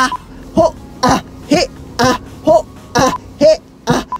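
A man chanting short, forceful shouted syllables in an even rhythm, about two a second: the 'a, he, a, ho' breathing chant of an abdominal exercise, the belly pulled in on 'he' and 'ho'.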